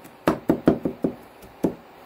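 Cleaver blade chopping garlic on a wooden cutting board: about five sharp knocks, quick ones in the first second and a last one a little later, then the chopping stops.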